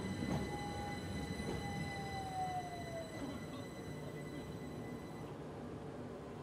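An electric passenger train running past, with a steady rumble and a high whine that drops in pitch about two seconds in.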